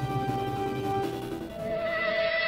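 Background music of sustained held tones, with a change to a new, higher set of tones about one and a half seconds in.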